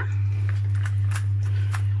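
A steady low hum with a few faint short clicks over it.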